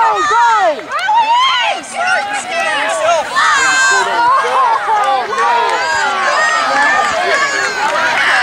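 Many overlapping high-pitched voices, children and spectators shouting and calling out at once, continuously, with no single clear words.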